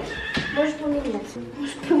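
A person's drawn-out voice: one long held vocal sound that drops in pitch near its end.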